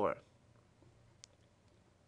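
Near silence of room tone, broken by a single faint click about a second in.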